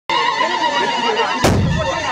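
A crowd of many voices with high, wavering cries starts abruptly, and a single heavy thump with a short low rumble comes about one and a half seconds in.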